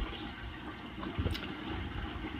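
Steady rushing of water circulating in a reef aquarium.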